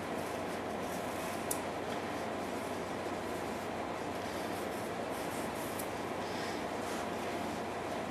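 Paring knife shaving the peel off a cucumber: faint scraping strokes over a steady background hiss and low hum, with a small tick about one and a half seconds in.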